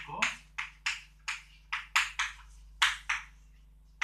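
Chalk writing on a blackboard: about a dozen short, sharp strokes and taps of the chalk in quick, uneven succession as a word is written out.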